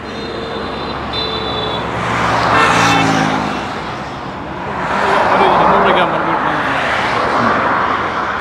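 Road traffic passing on a highway: the noise of passing vehicles swells and fades, loudest around three seconds in and again from about five seconds in.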